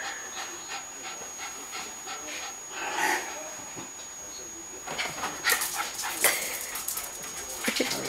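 Cairn terrier panting, with a short vocal sound about three seconds in. A run of sharp rustling and knocking noises fills the last couple of seconds.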